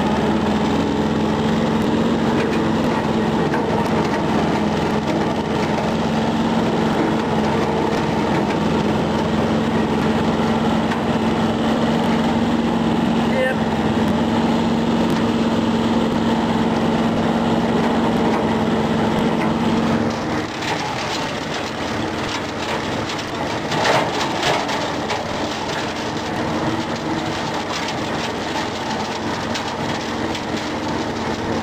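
John Deere 650 compact tractor's small three-cylinder diesel running hard at open throttle, driving a bush hog rotary cutter through dense overgrowth. About two-thirds of the way in, the steady engine note drops and turns to crackling as the cutter chews into thicker brush, with one louder knock a few seconds later.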